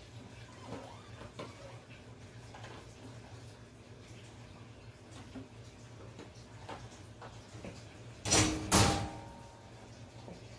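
Quiet handling noise while working inside a glass aquarium, then about eight seconds in two loud, short knocks or scrapes against the tank half a second apart, the second leaving the glass ringing briefly.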